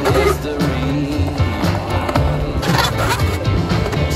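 Music with a steady beat, and skateboard wheels rolling over a concrete bowl.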